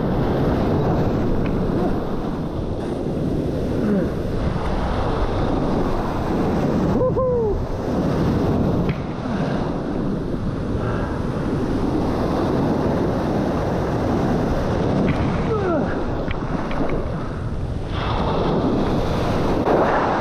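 Heavy surf breaking and churning close around the microphone: a loud, continuous rush of foaming water, with wind buffeting the microphone.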